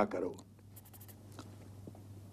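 A man's speech trails off, then a low steady hum with a few faint short clicks.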